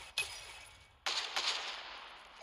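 Video game gunfire: a single sharp shot just after the start, then a burst of rapid automatic fire about a second in that fades away.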